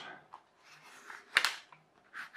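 A sheet of printed paper being bent and curled by hand: faint rustles, then one sharp paper crackle about one and a half seconds in.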